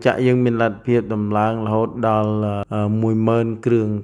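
A man speaking continuously in Khmer, slowly, with long drawn-out syllables.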